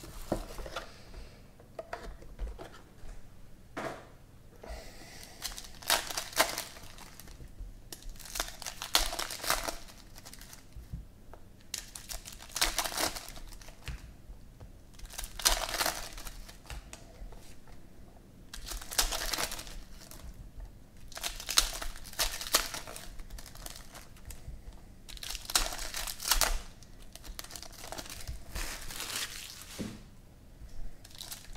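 Foil wrappers of Panini Prizm football card packs being torn open and crinkled by hand, in a run of short bursts every few seconds.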